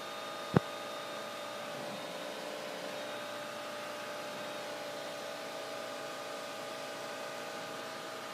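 Steady hiss with faint steady tones, heard through the headset intercom of a Flight Design CT light aircraft in flight with its engine running. One sharp click about half a second in.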